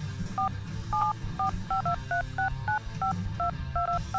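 Touch-tone telephone keypad dialing a number: a quick, uneven run of about fifteen short two-tone beeps.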